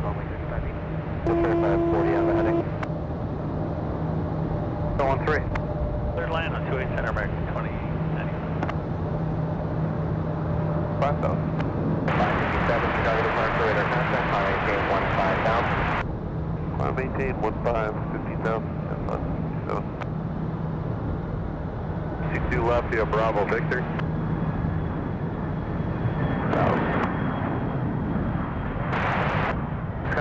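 Air traffic control radio, narrow and muffled like a phone line, with short stretches of faint, unclear speech. Near the middle comes about four seconds of radio hiss, and a brief steady tone sounds early on. Under it all run a steady low hum and a constant rumble of background noise.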